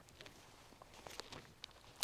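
Near silence with a few faint, short ticks and rustles from the thin pages of a Bible being leafed through.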